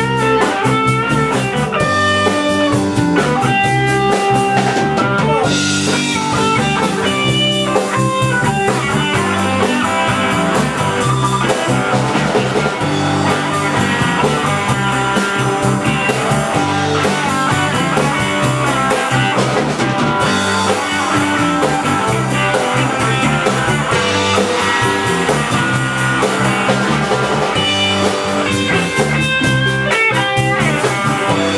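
Live band playing an instrumental passage with no vocals: electric guitars over a drum kit, with a lead guitar playing melodic note runs.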